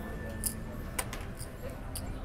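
Casino chips clicking as bets are handled on a blackjack table: about three sharp clicks, roughly half a second apart near the start and another near the end, over a steady low casino hum.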